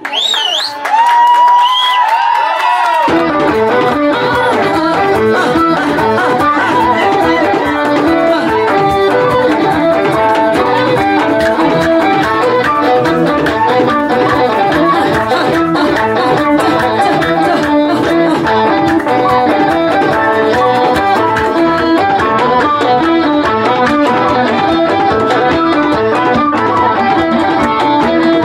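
Live Ethiopian traditional band music. A lone melodic line slides in pitch for the first few seconds, then the full band comes in about three seconds in and plays on with a steady beat.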